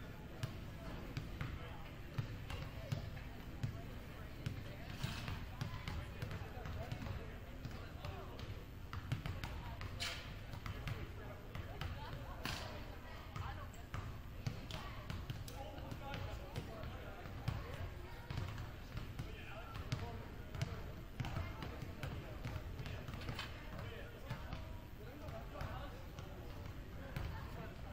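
Basketballs bouncing irregularly on a hardwood gym floor as people dribble and shoot around, over the background chatter of people in the gym.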